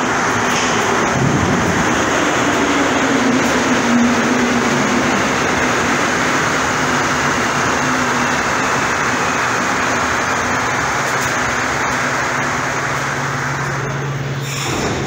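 Rubber-tyred Montreal metro Azur train running alongside the platform as it pulls in: a loud, steady rolling noise, with a faint whine that slowly falls in pitch as the train brakes.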